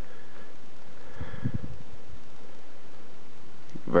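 Faint handling noise of fingers pressing the side volume buttons of an iPhone in a hard case, with a few soft low thuds about a second and a half in, over a steady low hiss.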